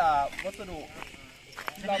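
Mostly people talking, with a few short knocks near the end from a hand hoe chopping into the soil.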